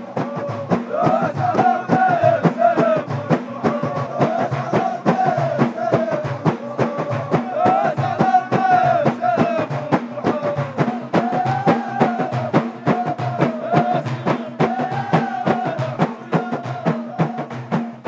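Ahidus music: a line of men beating large hand-held frame drums in a fast, steady rhythm while singing a short chant in unison, the phrase repeated every few seconds.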